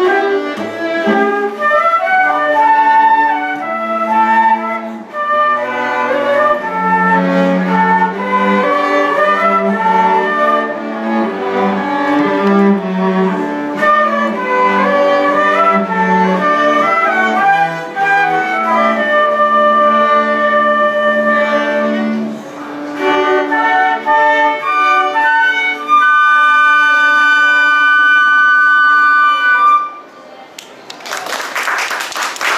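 Live chamber ensemble of two flutes, violin and cello playing a piece together, the flutes carrying the melody over the strings. In the last few seconds the group holds a long sustained chord, which then stops together to end the piece.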